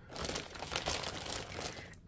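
Clear plastic packaging crinkling and rustling as it is handled, a quiet, irregular crackle.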